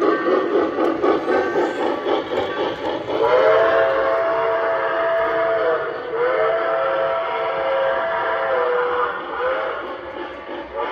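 An O scale model steam locomotive's onboard sound system: rapid chuffing, then a multi-note steam whistle blowing two long blasts and a short one, with the chuffing going on underneath.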